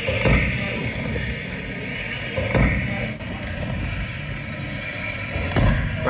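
Pro kick scooter's wheels rolling over a concrete skatepark ramp, with three thuds of the scooter hitting the surface: one just after the start, one about two and a half seconds in, and one near the end.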